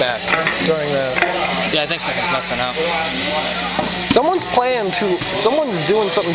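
Several people talking and chatting, unintelligibly, with a steady low hum under the voices; the voices grow louder after about four seconds.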